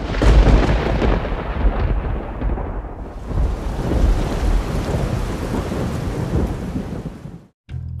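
Thunderstorm sound effect: a deep rumble of thunder with the hiss of rain, starting suddenly, the hiss brightening about three seconds in, and cutting off abruptly near the end.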